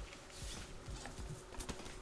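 Faint, scattered soft knocks and clicks at irregular intervals.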